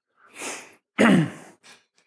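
A man breathes in audibly, then about a second in lets out a short, loud voiced exhale, falling in pitch, like a sigh.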